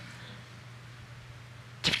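A pause in a man's speech: quiet room tone with a low, steady hum. He starts talking again near the end.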